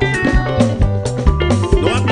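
Live band music with bass guitar, electric guitar, keyboards and drums playing over a steady beat.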